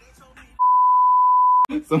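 A single steady high-pitched censor bleep lasting about a second, with all other sound cut out beneath it, ending in a sharp click as the speech comes back.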